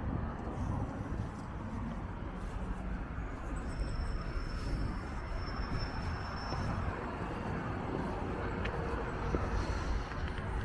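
Steady outdoor background noise with a low rumble, typical of distant road traffic, and a faint thin high tone lasting a few seconds midway.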